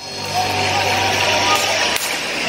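City street traffic with a heavy vehicle's engine running close by: a steady low hum under a wide hiss, the hum dropping out near the end.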